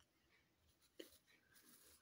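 Near silence: faint scratching of a pencil on paper, with one soft tap about halfway through.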